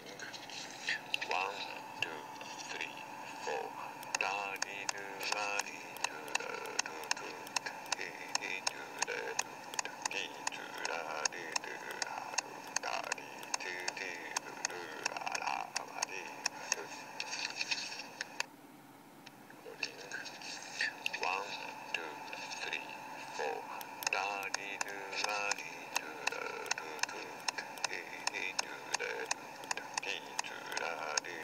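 Playback of an earlier recording through a small handheld device's speaker: a quick, regular run of taps with a voice sounding along over them. About 18 seconds in it stops for a second and the same passage plays again.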